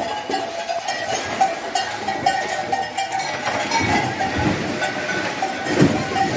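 Cattle splashing and plunging through the water of a cattle dip tank, with a dense clatter of knocks and splashes. A few lower sounds come near the end.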